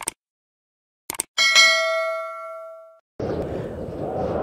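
Sound effects for a subscribe-button animation: a mouse click, then two quick clicks and a bell-like notification ding that rings with several tones and fades out over about a second and a half. Near the end, steady road noise from a moving car starts.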